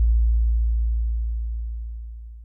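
The tail of an intro music sting: a deep, steady low tone left over from a gong-like chord, fading out steadily.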